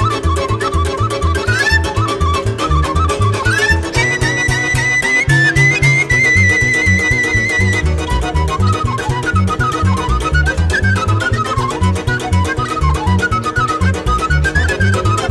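Romanian Gypsy lăutari band music played live: a small wooden flute carries a quick, ornamented melody and holds one long high note with vibrato in the middle, over a bouncing bass and chord accompaniment with a steady beat.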